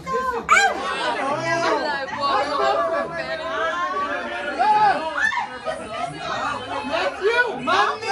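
A group of adults talking over one another: crowded party chatter with several voices at once.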